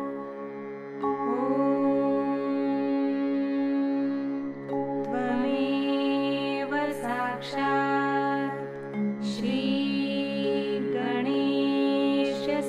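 Slow Indian-style meditation music: a melody of sliding, held notes over a steady drone, with the melody entering about a second in.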